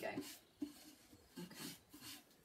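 Faint scratchy rubbing of a brush working sealer over decoupage paper on a furniture edge, in short strokes.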